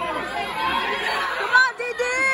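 Spectators talking and calling out over one another, with one loud, high-pitched shout near the end.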